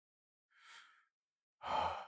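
A person breathing out softly, then sighing more loudly near the end.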